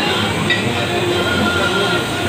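Natural hot spring water boiling and bubbling vigorously in a stone pool, a steady rushing noise.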